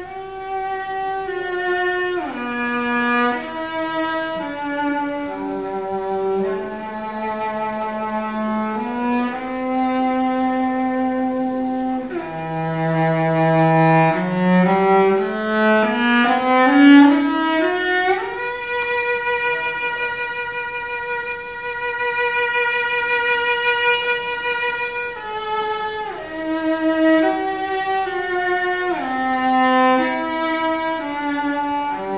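Solo cello played with a bow: a slow melody of held notes. Near the middle it climbs in a rising run to a long high note held for about six seconds.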